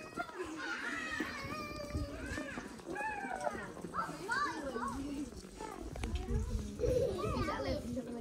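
Young children shouting and calling out to each other as they play, their high voices rising and falling throughout, with other voices in the background.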